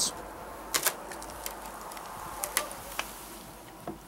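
Light handling clicks and taps over a faint steady hiss: a couple about a second in, a pair around two and a half seconds, and one just before the end, as the camera is moved and the billhooks are handled.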